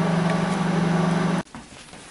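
Microwave oven running, a steady low hum, which cuts off suddenly about one and a half seconds in, leaving faint room sound.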